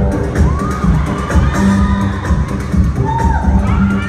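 Loud dance music with a heavy, pounding bass beat played over the hall's loudspeakers, with an audience cheering and shouting over it.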